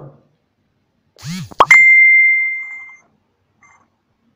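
Editing sound effect: about a second in, a brief sound that rises and falls in pitch, then a sharp click and a loud bell-like ding at one steady high pitch that rings and fades over about a second.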